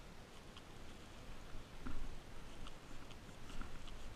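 Plastic bags worn over the hands crinkling in scattered small crackles as they rub a goat kid's coat, with a soft thump about two seconds in.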